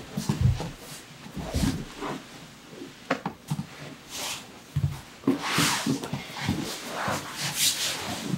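Two grapplers in cotton gis moving on a foam mat: irregular soft thuds of bodies, knees and hands on the mat, with bursts of cloth rustling and rubbing, the loudest a little past halfway and again near the end.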